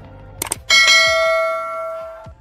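Two quick clicks, then a single bell-like chime that starts suddenly about two-thirds of a second in and rings out, fading over about a second and a half.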